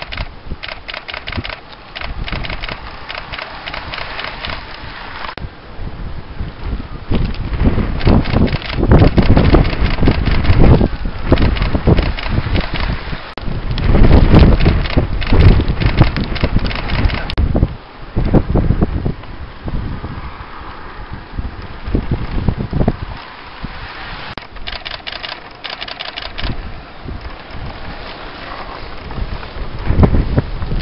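Wind buffeting an outdoor microphone, with loud low rumbling gusts through the middle and spells of rapid crackly clicking near the start and again near the end.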